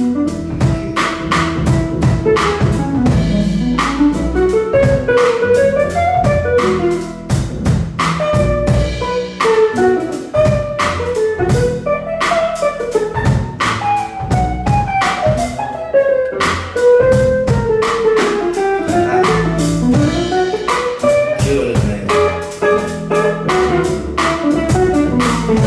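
Live jazz band instrumental: a hollow-body guitar plays a running melodic line over upright bass and a drum kit, with no trumpet or vocals.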